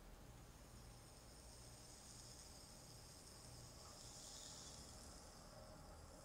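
Near silence: the faint hiss of a burning ear candle, swelling a little about four seconds in, over a low hum.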